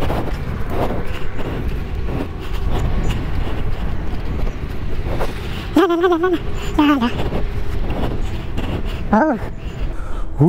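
Short wordless vocal sounds, hums or exclamations, come about six, seven and nine seconds in. Under them runs a steady low rumbling noise.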